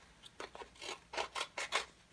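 Scissors cutting paper: a quick run of several short snips, starting about half a second in.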